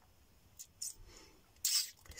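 Mostly quiet, broken by a person's short breath noises: two faint brief hisses a little after half a second and a louder short hiss near the end.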